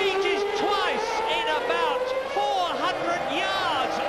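Excited male TV commentary over the steady, slowly rising whine of Formula One car engines at racing speed.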